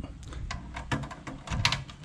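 A few sharp clicks and light knocks as a converted steel jerry can, with stainless clasps and hinges, is handled and shifted.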